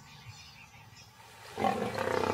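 A lioness snarls, suddenly and loudly, about one and a half seconds in, after a faint, quiet start.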